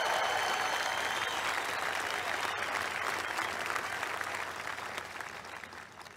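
A large audience applauding, the clapping slowly dying away toward the end.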